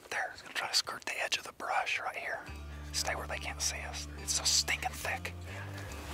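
Hushed, whispered speech, with background music coming in about two and a half seconds in as a held low bass note that shifts near the end.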